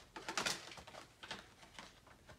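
Tarot cards being handled and drawn from the deck: a few soft clicks and rustles of card stock, the sharpest about half a second in.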